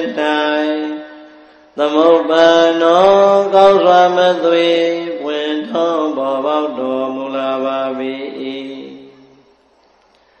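A voice chanting Buddhist recitation in long, held, melodic phrases. A short pause comes about a second in, then one long phrase that fades out near the end.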